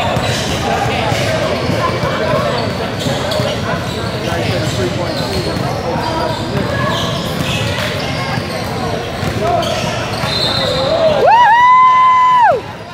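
Indoor gym during a basketball game: a basketball dribbling and bouncing on the hardwood under echoing voices of players and spectators. Near the end a loud, drawn-out yell rises in, holds for about a second and falls away.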